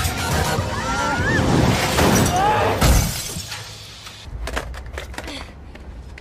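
Glass shattering and crashing in a film action scene over the music score, with a few short high squeals sliding up and down. The noise is dense for about three seconds and then falls away, leaving a few scattered sharp clicks.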